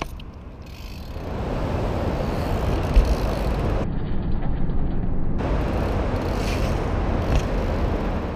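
BMX bike riding and doing a trick on concrete: a steady rushing noise from about a second in, with one sharp thump about three seconds in as the bike comes down.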